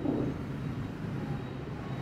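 Steady low background rumble with an even hiss during a pause in speech: room noise with no distinct event.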